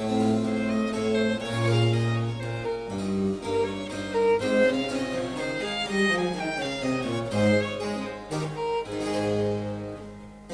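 Baroque violin playing a quick run of melody over harpsichord and cello continuo, on period instruments: an instrumental passage with no singing.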